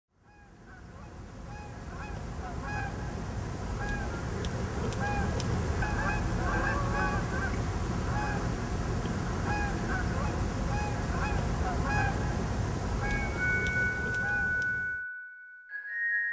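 Many birds calling over and over, short calls at several pitches, over a steady low rumble that fades in over the first couple of seconds. A held high tone joins near the end, and everything cuts off suddenly about a second before the end.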